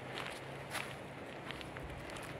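Footsteps of a person walking along a forest trail, a series of short, uneven steps.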